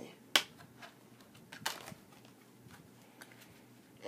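Handling of a Blu-ray steelbook case and disc: a sharp click about a third of a second in, then a rougher click with a brief rustle about a second and a half later, and a few faint taps between.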